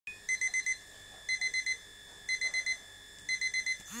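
Electronic alarm beeper of a twin-bell novelty table alarm clock going off: groups of four quick high beeps, about once a second.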